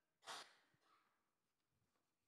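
Near silence, broken once about a quarter second in by a short, breathy rush of air like a sigh, fading within about half a second.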